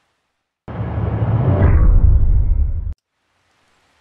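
A short, deep, noisy transition sound effect lasting about two seconds, starting just under a second in and cutting off suddenly.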